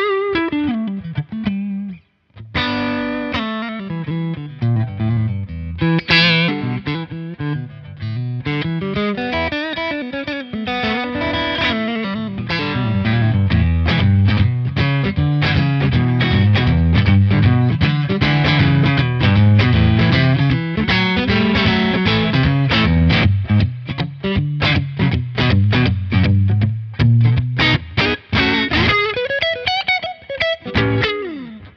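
Black Fender Stratocaster played through a Nobles overdrive pedal with its drive set low, into a Fender amp. The lightly overdriven electric guitar breaks off briefly about two seconds in, then carries on, growing louder and busier with rhythmic picking from about twelve seconds on.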